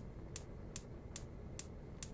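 Gas cooktop's electric spark igniters clicking: four faint, sharp, evenly spaced clicks, about two and a half a second, with the burner control knob turned to Ignite. The igniters keep clicking until a flame is sensed.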